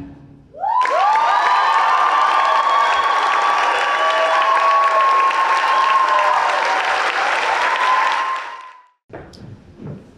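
Audience applauding and cheering, with high whoops held over the clapping. It starts just under a second in and dies away near the end.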